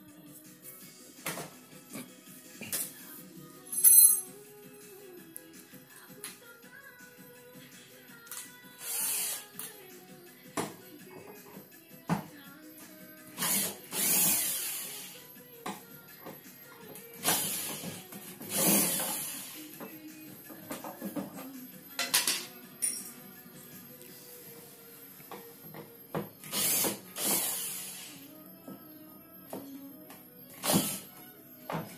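Cordless drill-driver backing out the screws of an LED TV's rear casing, running in short spurts of one to two seconds, about six times.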